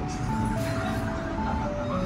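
Background music: a simple melody of clear held notes stepping up and down in pitch.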